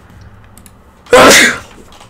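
A man sneezing once, loudly, about a second in.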